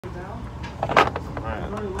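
A sharp metallic clatter about a second in from a suppressed FGC-9 9mm carbine being fired or racked, with muttering around it. The gun is not cycling properly, which the owner puts down to the action needing oil.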